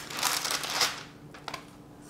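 Crinkling and rustling of a plastic food-wrap package being handled, lasting about a second, then a faint tick.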